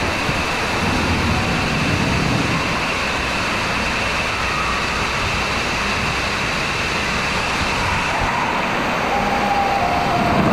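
Steady rushing of lazy-river water, with spray and falling water splashing onto the river, heard as a continuous even noise.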